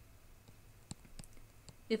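Faint, scattered clicks of a stylus tapping a drawing tablet while coordinates are hand-written, most of them about a second in.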